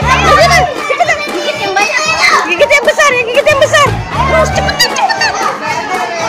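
A crowd of young children shouting and cheering all at once, with music playing underneath and its heavy bass coming in twice, near the start and about four seconds in.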